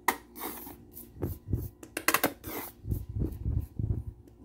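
Kitchen utensils and containers clicking and knocking against a stainless steel pot as mayonnaise is spooned out over the macaroni. The sharp irregular clicks come with several soft thuds in the second half.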